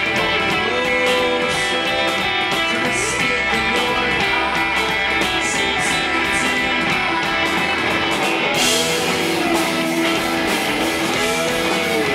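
Rock band playing live, with electric guitars and drums, in an audience recording; about two-thirds of the way through the sound grows brighter and fuller in the highs.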